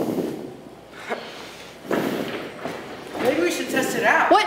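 Indistinct voices on a stage in a large hall, coming in short bursts about a second apart, with voice-like calling toward the end.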